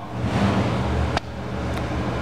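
Steady low hum of a motor vehicle engine running nearby, with a rush of noise over the first second and a single sharp click a little after one second in.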